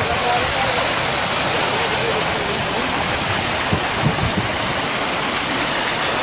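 Steady rushing of a stream of dark wastewater flowing across the sand into the sea, with faint voices underneath and a few soft low thumps about four seconds in.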